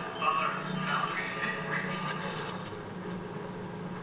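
TV episode soundtrack played back under the reaction: faint dialogue in the first couple of seconds over a low, steady hum.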